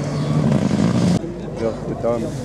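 Rally car engine running hard on a gravel stage, cut off abruptly just over a second in. Spectators' voices follow.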